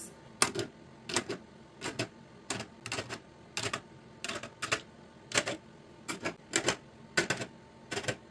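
Glass nail polish bottles being set down one after another on the shelves of a clear acrylic organizer, a sharp click or clink with each bottle, roughly two a second at an uneven pace.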